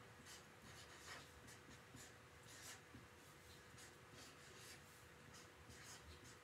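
Marker pen writing on chart paper: a series of faint, short scratchy strokes as the tip moves across the paper.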